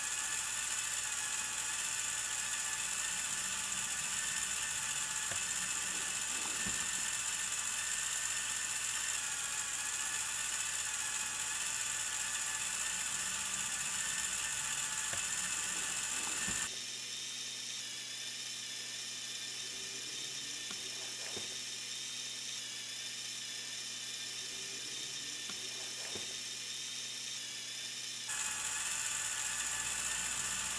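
Plastic Technic gears and gear train of a Lepin 20005 toy mobile crane (a copy of Lego 42009), turned by hand to raise the boom, making a steady whirring, ratcheting clatter. The sound changes suddenly a little past halfway and again shortly before the end.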